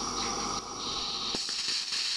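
Safety valve of a Roundhouse Argyll gas-fired live-steam model locomotive blowing off steam in a steady hiss; the boiler is overfilled. The lower part of the sound drops away abruptly shortly after halfway.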